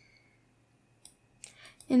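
Two or three faint computer mouse clicks a second or so in, from dragging a code block and selecting a sprite, with a woman starting to speak at the very end.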